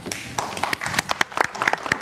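Studio audience applauding: many people clapping at once, a dense patter of sharp hand claps.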